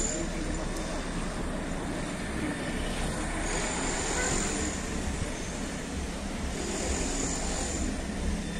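Steady outdoor street background noise: a continuous low rumble with hiss.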